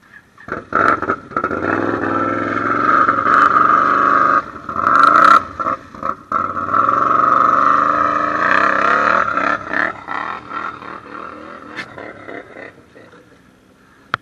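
Can-Am ATV engine revving hard as the machine churns through a deep mud hole. The revs rise and fall, dip sharply twice in the middle, then ease off and fade out near the end.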